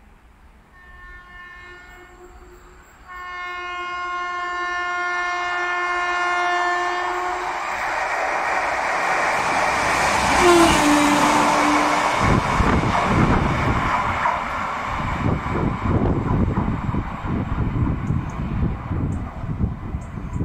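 Renfe electric locomotive running light through a station: a long horn blast, first fainter and then louder from about three seconds in, followed by the rising rush of the locomotive passing close by. In the second half, its wheels knock repeatedly over the rail joints as it goes past.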